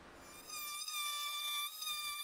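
Handheld oscillating multi-tool running with a steady, high-pitched buzz that starts a moment in, as it cuts the overlong ends of walnut strips flush in place.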